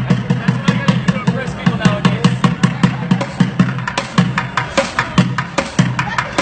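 Bucket drumming: plastic buckets struck with drumsticks in a fast, steady rhythm of about four hits a second, with deep booming strokes among sharper clicks.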